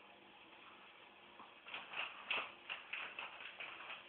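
Ferrets at play: a quick, irregular run of light clicks and taps, beginning about a second and a half in and lasting about two seconds.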